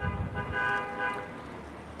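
A long, steady horn tone in the background, holding one pitch and fading out near the end.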